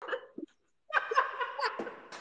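Laughter: a short burst right at the start, a brief pause, then about a second of laughing from about a second in.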